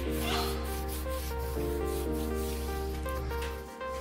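A brush rubbing over a sandstone surface as a colour-deepening protective impregnation is brushed on, under background music of slow sustained chords.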